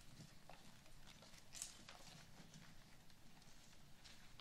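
Near silence: faint room tone with scattered small knocks and rustles, a slightly louder rustle about one and a half seconds in.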